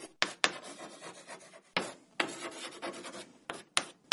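Chalk writing on a blackboard: a run of scratchy strokes, some short and some drawn out, each starting sharply, with short gaps between.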